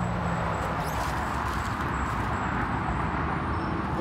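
Steady roar of road traffic, an even wash of noise with no breaks.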